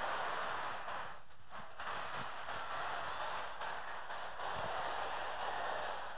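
Theatre audience applauding and laughing after a punchline, a steady crowd noise that dips briefly about a second in.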